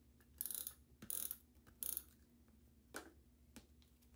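Handheld tape runner drawn across the back of a small piece of cardstock in three short strokes, its gear mechanism ratcheting as it lays down adhesive. Two light clicks follow near the end.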